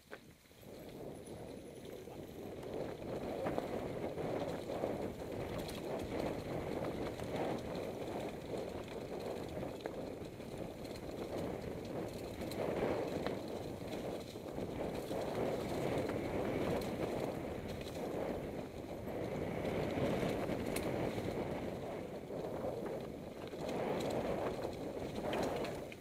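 Mountain bike riding down a dry dirt singletrack strewn with leaves: continuous tyre rumble and crunching with scattered knocks and rattles from the bike over bumps, building up about a second in.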